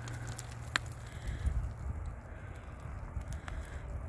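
Wind rumbling low and steady on the microphone, with a few faint clicks and crackles of loose rock and dirt being handled; the sharpest click comes about a second in.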